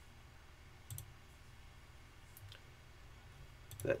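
A few faint, sparse clicks of a computer mouse: one about a second in, another midway, and a quick pair near the end.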